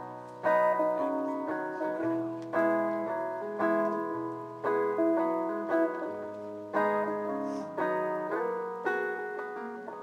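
Solo acoustic guitar playing the instrumental intro of a folk song, chords struck about once a second, each ringing out and fading before the next, heard through a PA.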